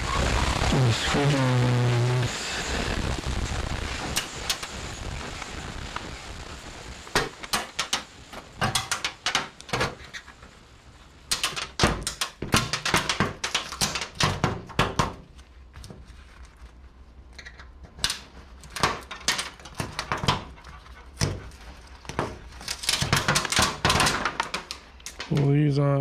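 LED backlight strips being pried and snapped off a flat-screen TV's sheet-metal back panel: a long run of sharp clicks and snaps, bunched in clusters. A brief voice-like hum comes at the start.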